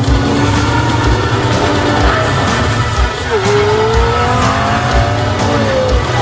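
Soundtrack of a car video playing through a car stereo: music with a low beat about once a second, mixed with engines revving and tyres squealing in gliding pitches, one rising sharply about halfway through.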